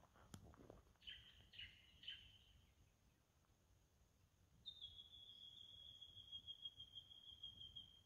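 Faint bird calls in a quiet bush setting: three short high calls about a second in, then one long, steady high whistle that drifts slightly lower from just past halfway to the end. A faint click sounds just after the start.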